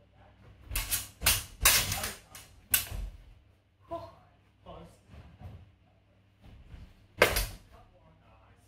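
Training swords clacking and striking in a sparring exchange: a quick flurry of loud hits about a second in, then one more sharp hit near the end.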